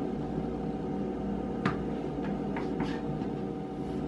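A few light taps and clicks as baked cookies are popped out of a silicone mold and set down on a wooden board, over a steady hum.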